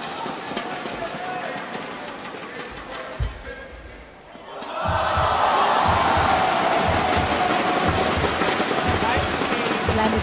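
Indoor arena crowd murmuring, with a single thud about three seconds in. Then, about five seconds in, it breaks into loud cheering and chanting with a steady rhythmic low thumping as a badminton point is won.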